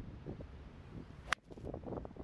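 A 3-wood striking a golf ball off the fairway: one sharp click a little over a second in. Steady low wind rumble on the microphone underneath.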